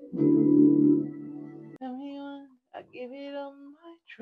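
A loud, sustained synth-keyboard chord from the beat that cuts off sharply a little under two seconds in, followed by a woman singing two short vocal phrases.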